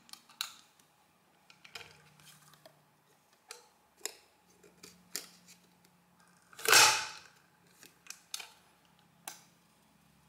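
Printing mechanism of a Monforts industrial counter being worked by hand: light metal clicks from the lever and card slot, then one loud clack about seven seconds in as the print stroke drives the hammer against the card, ribbon and number wheels.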